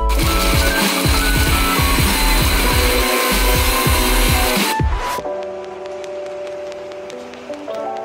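An electric blender runs for about the first five seconds, grinding spices with a little broth, then cuts off abruptly. Background music with a drum beat plays throughout and is the loudest part.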